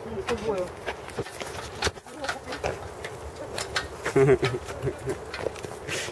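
Brief snatches of people's voices, mostly not words that can be made out, with scattered clicks and taps between them.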